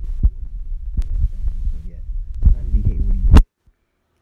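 Low rumbling and thumping noise on the microphone, with a few brief voice sounds near the end. It cuts off abruptly about three and a half seconds in.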